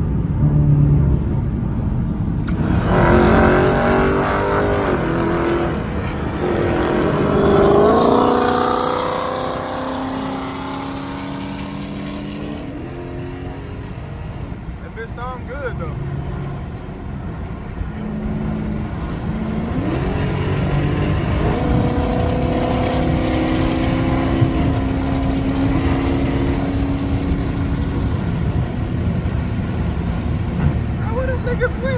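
V8 muscle car's engine and exhaust heard from inside the cabin, pulling hard about three seconds in, its pitch climbing and dropping through a few gear changes, then settling to a cruise and climbing again after about twenty seconds as the car gains highway speed.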